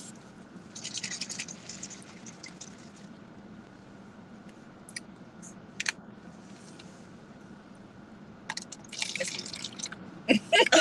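Juice sloshing in a small plastic bottle as it is shaken, a couple of short clicks, then juice poured into a plastic cup near the end.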